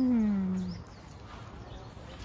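A dog gives one drawn-out whine that falls in pitch and lasts under a second, at the start.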